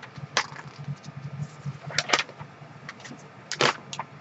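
A sheet of paper crackling as it is handled and unfolded. There are short crisp crinkles about half a second in, a pair at about two seconds and two more near the end.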